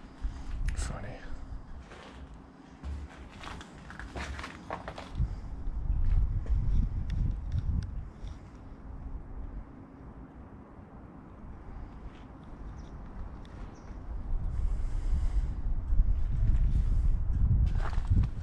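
Wind rumbling unevenly on the microphone, with a few footsteps and handling knocks in the first five seconds.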